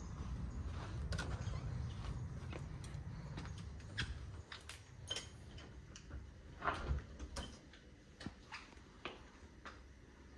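Low wind rumble on the microphone for the first few seconds, fading out on stepping indoors. Then come scattered clicks and knocks from footsteps and the door being handled, the loudest about seven seconds in.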